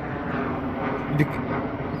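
Steady outdoor background noise, an even low rumble with no distinct events, and a brief faint voice sound about a second in.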